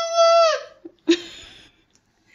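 A toddler boy crying over a broken banana: a long high-pitched wail that breaks off about half a second in, then a short sharp cry about a second in.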